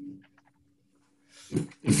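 A pause in a video-call meeting: a short sound right at the start, then near silence with a faint steady hum, until a man starts speaking near the end.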